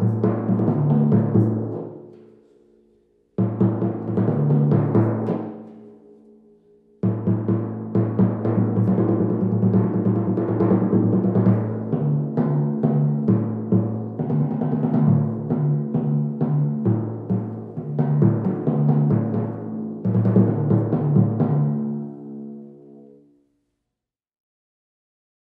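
A pair of orchestral timpani struck with felt mallets, the low drum tuned to A and the high one to D. Short phrases of alternating strokes ring out and fade, then a long unbroken run of strokes starts about seven seconds in and is left to ring away near the end.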